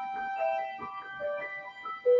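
Live violin and piano music: a held violin note with short piano notes joining about half a second in.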